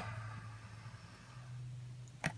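Quiet room tone: a faint, steady low hum with light hiss and no distinct event.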